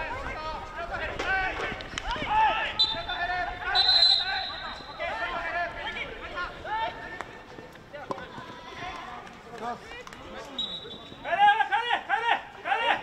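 Field hockey players shouting calls to each other across the pitch, with a few sharp clacks of sticks hitting the ball.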